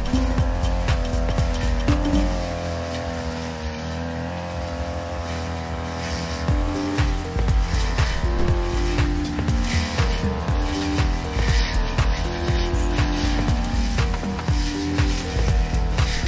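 Petrol brush cutter engine running at high speed, its pitch wavering slightly as its 45 cm metal blade cuts young grass. A music track with a steady beat and a bass line plays over it.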